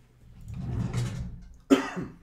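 A man clearing his throat and coughing: a low sound swells over the first second, then one sharp cough comes near the end, the loudest sound here.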